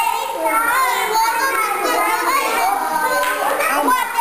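Young children's voices, several talking and calling out over one another.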